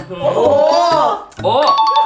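People talking, then near the end a two-note chime like a doorbell ding-dong: a higher tone followed by a lower one.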